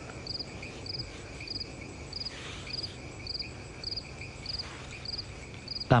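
Crickets chirping in a steady, even rhythm, a short pulsed chirp a little under twice a second.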